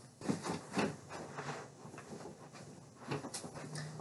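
Scattered handling and movement noises: clothes being rustled and handled and footsteps, with a few soft knocks near the start and light clicks near the end.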